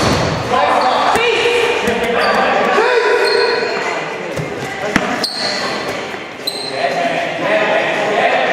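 Dodgeballs knocking off the floor and off players in an echoing gym, with sharp hits right at the start and about five seconds in, under players' shouts and calls.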